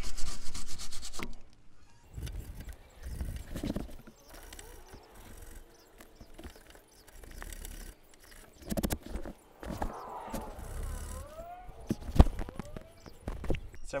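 Steel wire brush scrubbing caked dirt off a brake hose fitting and steel chassis bracket, cleaning it before the hose is undone. Fast back-and-forth scraping in about the first second, then slower, intermittent strokes.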